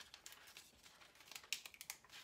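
Faint crackling clicks of a Cricut Infusible Ink sheet being weeded by hand, the cut ink cracking as pieces are pulled away, with a quick run of sharper clicks near the end.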